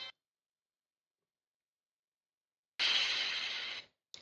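About three seconds of silence, then roughly a second of an audio sample played back through Ableton Live's Texture warp mode at a drastically changed grain size. It sounds grainy and smeared, without the clear pitch of the unaltered playback.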